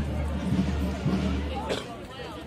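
Outdoor band music with sustained low notes, under the chatter of a crowd; the low notes stop near the end.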